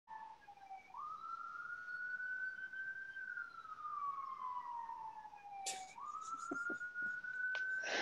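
A faint wailing siren: a single thin tone that slides down, jumps up, climbs slowly, falls slowly over a few seconds, then jumps up and climbs again. A short click comes about two thirds of the way through.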